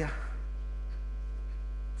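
Steady electrical mains hum, a low unchanging drone with faint higher overtones, carried on the sermon's sound recording.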